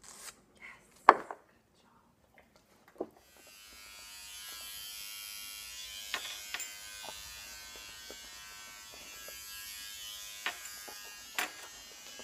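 Small electric hair trimmer switched on about three seconds in and buzzing steadily while held near a dog's face, with light clicks of handling over it. Before it starts there are a few sharp knocks, one loud one about a second in.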